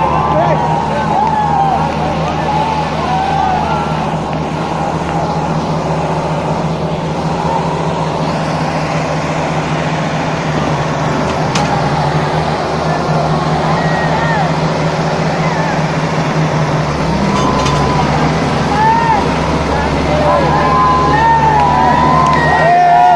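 Diesel engines of an Arjun 555 and a Kubota 5501 tractor running hard under load as they pull against each other in a tug-of-war, with a crowd shouting over them. The engine note grows deeper and stronger about three-quarters of the way through.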